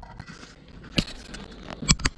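Two short sharp clicks or knocks, one about a second in and a louder one near the end, over faint handling noise.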